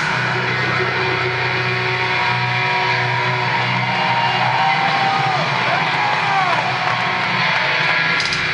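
Live metal band playing loud, dominated by distorted electric guitars, with a few notes bending in pitch past the middle.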